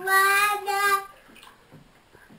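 A toddler singing in a high voice, holding two long notes, then stopping about a second in.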